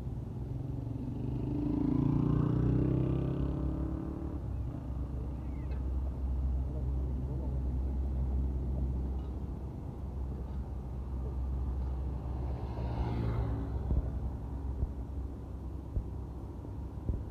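Road traffic: a steady low rumble of heavy vehicles, with engines passing close and growing louder about two seconds in and again near thirteen seconds.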